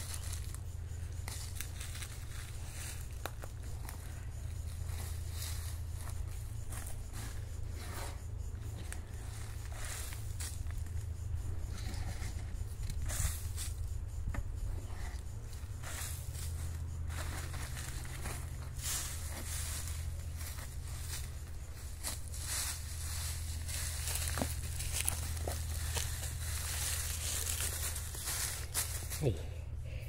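Hands working loose soil, dry leaves and plastic while planting a seedling: irregular rustles and crackles over a steady low rumble.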